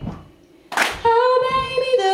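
A woman's voice singing unaccompanied, taking a sharp breath about three quarters of a second in and then holding a steady note. Underneath, the audience's stomps and claps keep the beat, with low thumps at the start and again during the note.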